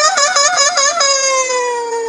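A person's voice wailing a long, high, drawn-out "No!". It warbles rapidly between two pitches at first, then from about a second in holds one long note that slowly sinks.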